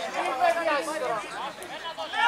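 Several voices shouting and calling out over one another during a football match.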